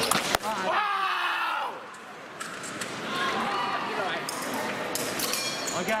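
A few sharp clashes as the fencers' sabre blades meet and a lunging foot lands on the strip, then a loud shout from a fencer just after the touch. More voices follow, with scattered light clicks.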